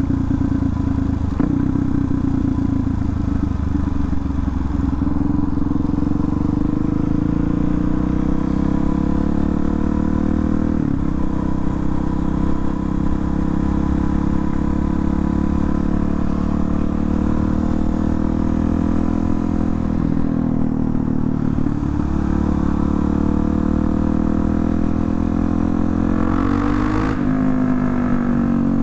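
Suzuki DRZ400SM supermoto's single-cylinder four-stroke engine running under way, ridiculously loud. Its pitch climbs slowly over the first several seconds and then holds steady, with a few short breaks.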